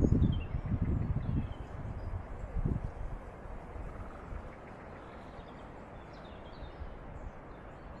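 Quiet outdoor ambience with a few faint bird chirps. A low rumbling noise in the first three seconds fades away.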